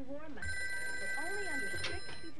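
Home telephone ringing: one long ring starts about half a second in and holds for about two seconds, with a voice talking underneath.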